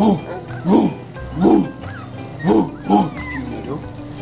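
A dog barking: five short barks over about three seconds, the last two close together.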